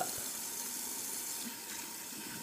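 A kitchen tap running steadily into the sink while hands are washed under it.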